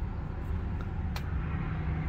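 Steady low rumble of a running motor vehicle, with one faint click about a second in.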